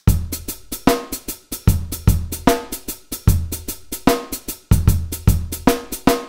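Programmed MIDI drum beat played back on a sampled drum kit: kick, snare and fast hi-hats in a steady groove. Swing quantize has been pushed to the right, so mostly the hi-hats fall off the straight grid and the beat has a shuffled feel.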